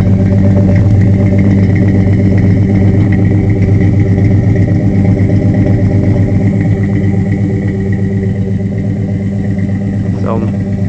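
A 1966 Ford Falcon's 200 cubic-inch straight-six idling steadily, heard at the tailpipe through split Hooker headers and two Flowmaster mufflers.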